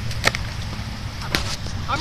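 Two sharp clicks about a second apart as the phone is handled, over a steady low rumble.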